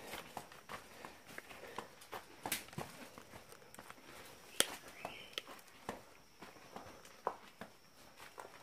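Footsteps on a dirt path covered in dry leaves: irregular soft crunches and scuffs, with a couple of sharper clicks about two and a half and four and a half seconds in.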